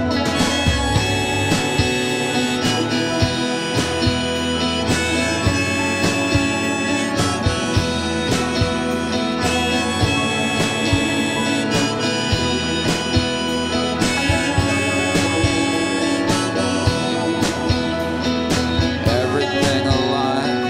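Instrumental passage of a live indie rock song: a keyboard holds a sustained lead line over strummed guitar and a drum kit keeping a steady beat, with no singing.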